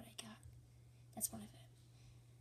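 Faint whispering in two short snatches, near the start and just past a second in, over a low steady hum.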